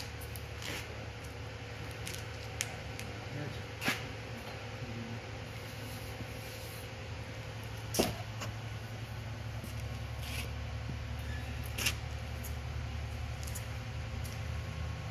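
Steady low room hum with a few short, sharp knocks, the loudest about eight seconds in, as a honeycomb calcite cylinder is handled on a workbench.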